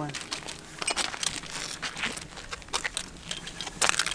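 Rustling and crunching with many light clicks and knocks as someone moves onto an aluminium ladder to climb down into a dirt pit, with a sharper knock near the end.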